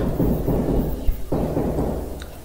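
A low steady rumble, with faint muffled sounds over it in the first second or so.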